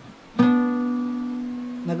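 Acoustic guitar plucked once about half a second in, the note ringing out and slowly fading for about a second and a half.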